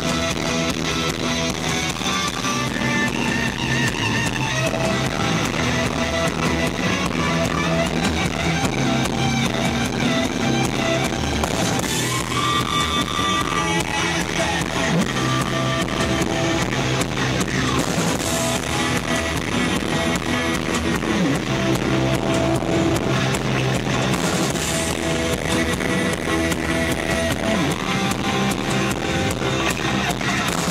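Live rock band playing an instrumental passage: electric guitar, bass guitar and drum kit, loud and continuous through the club PA.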